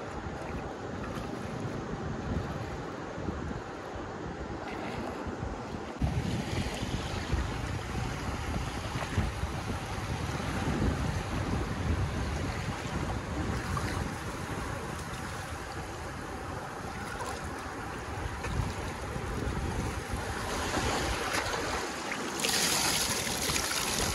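Wind buffeting the microphone over small sea waves washing in the shallows. The wash grows louder and brighter about six seconds in.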